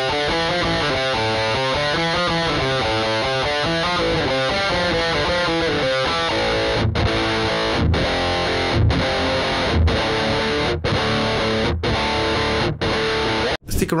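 Distorted electric guitar played through a Valeton GP-5 multi-effects pedal, its Green OD overdrive (modelled on the Ibanez TS-808 Tube Screamer) at high gain. A fast run of picked notes gives way, about seven seconds in, to chords broken by short stops about once a second, and the playing cuts off abruptly near the end.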